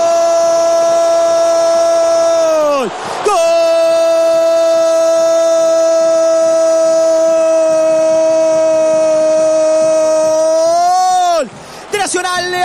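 Football radio commentator's long drawn-out goal cry, "goooool", shouted at full voice and held on one steady pitch. He holds it about three seconds, snatches a breath, then holds it about eight seconds more, lifting slightly at the end before breaking off.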